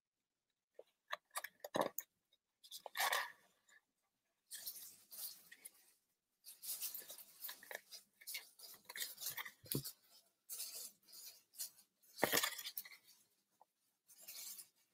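Cardstock being handled and pressed together by hand: scattered soft rustles and small crinkles, with a louder rustle about three seconds in and another near the end.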